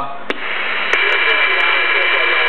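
Uniden Washington CB base station receiver hissing with band static through its speaker in receive mode after the transmission ends, with a click. About a second in, another click and an incoming signal bring a steady high whistle over the hiss.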